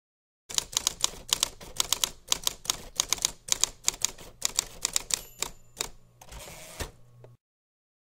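Manual typewriter keys striking in quick, uneven bursts for about five seconds. A brief bell-like ring comes about five seconds in, then a short rasping slide like the carriage return, before it stops.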